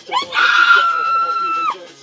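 A woman's high-pitched scream: a short rising yelp, then one long held shriek lasting over a second that cuts off near the end.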